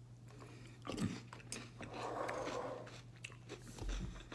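A man chewing a mouthful of cereal, with small clicks of the spoon against the bowl, and a low thump near the end as the bowl is set on the table.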